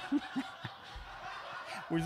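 Soft chuckling and snickering laughter with a few short vocal sounds, and a brief low thump about a second in.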